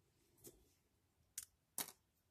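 Small snap-fit plastic model-kit parts handled, giving three small clicks over near silence: a faint one about half a second in, then two sharper ones near the end, the last the loudest.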